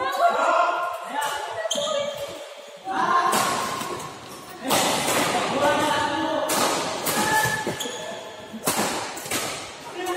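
Badminton rackets hitting the shuttlecock back and forth in a doubles rally: a string of sharp hits, about one every second or so.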